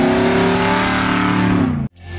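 Holley EFI-equipped Mercury Comet gasser engine pulling hard as the car drives by. Its pitch holds high, then falls as the throttle eases off, and the sound cuts off suddenly near the end.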